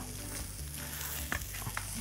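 Beef searing on a hot grill: a steady sizzle, with a few faint light clicks.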